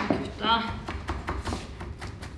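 Chef's knife chopping fresh herbs on a plastic cutting board: a quick run of sharp taps, several strokes a second, with a brief bit of voice near the start.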